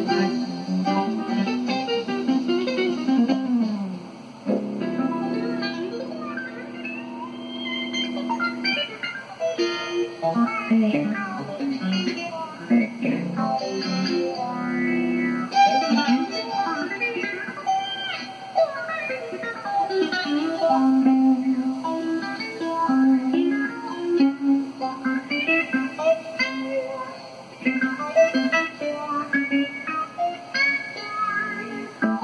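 A live country band playing an instrumental on pedal steel guitar, fiddle, electric guitar and drums, with a long held chord from about four to nine seconds in.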